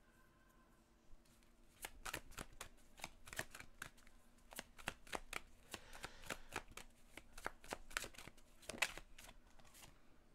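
A deck of oracle cards being shuffled by hand: faint, irregular card snaps and slides, several a second, starting about two seconds in.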